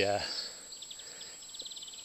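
A man's hesitant 'uh' at the start, then an insect chirping in the grass: two short runs of rapid, evenly spaced high-pitched pulses, about a second apart.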